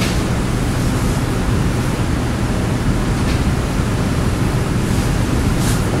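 Steady hiss of classroom background noise with a low hum beneath it, no speech.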